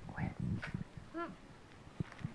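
Long-tailed macaque rustling and knocking a card against a cardboard box, with soft irregular handling noises, and one short rising-and-falling call about a second in.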